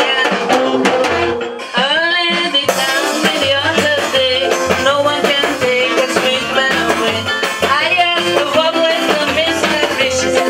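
A woman singing a calypso live with a small band, guitars and drums playing behind her voice.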